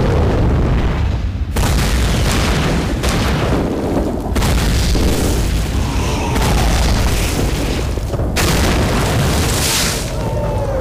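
War-film battle sound effects of artillery: a continuous heavy rumble, with fresh shell blasts breaking in every few seconds and the falling whistle of an incoming shell about six seconds in.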